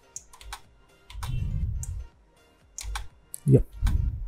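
Computer keyboard keys and mouse buttons clicking in a few separate, sharp clicks while editing in software.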